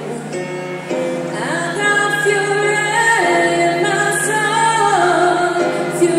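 Live music: a woman singing long held notes that step up and down, over a steady low accompanying note.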